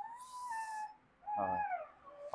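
A dog whining: a thin, high whine held for most of a second, then a second, shorter whine that falls in pitch at its end.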